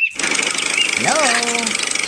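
A small engine starts abruptly and runs with a fast, even chatter.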